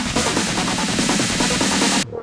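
Acid trance / psytrance dance track playing at full tilt: a driving electronic beat under a repeating 303-style acid synth line that slides in pitch.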